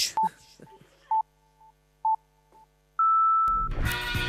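Electronic beeps in a countdown pattern: three short beeps about a second apart, then one longer, higher beep, like a start signal. Music with singing starts right after it, near the end.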